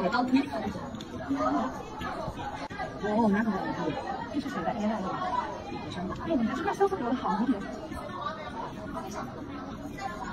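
Indistinct chatter of several people talking over one another, heard from a distance.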